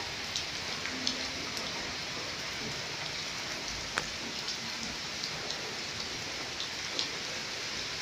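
Steady rain falling on dense tree foliage: an even hiss with scattered sharper drops hitting now and then.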